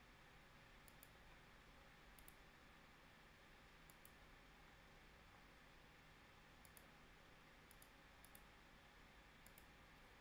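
Faint computer mouse button clicks, each a quick double tick, about seven times at irregular intervals over near-silent room tone.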